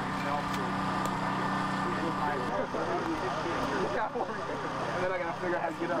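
An engine running steadily with a low hum under background talk; the hum drops down about two and a half seconds in.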